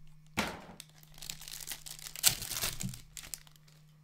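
Foil-wrapped hockey card pack being torn open and crinkled by hand: a run of crackling, rustling rips, the loudest just after two seconds in.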